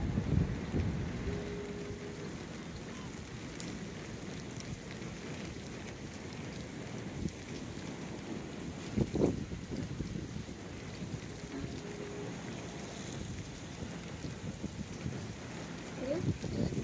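Steady hiss of rain falling on wet ground and water, with one short, louder sound about nine seconds in.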